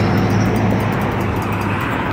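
Road traffic: a motor vehicle running with a steady low hum under a wash of traffic noise.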